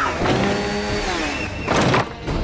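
Chainsaw engine revving: a held, buzzing pitch that drops away after about a second. A short, sharp noisy burst near the end, the loudest moment, is a hit or a whoosh.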